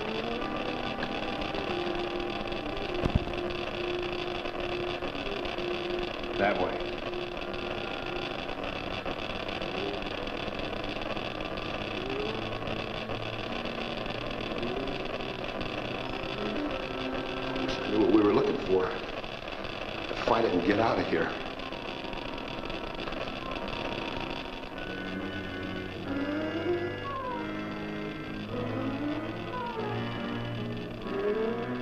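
Suspenseful film score of sustained low notes, with sliding tones building near the end, and a few brief voice calls about six, eighteen and twenty seconds in.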